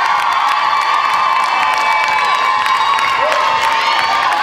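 Audience cheering loudly, many high-pitched young voices holding shrill screams and whoops, with scattered clapping.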